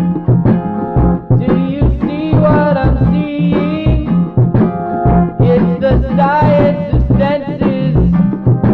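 Band's demo recording of a rock song: drums on a steady beat with bass and keyboard under a sung vocal line.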